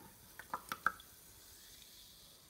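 The last drops of a canned fizzy drink dripping from an upturned can into a full glass: four quick plinking drips in under half a second, the last the loudest. A faint fizzing hiss follows.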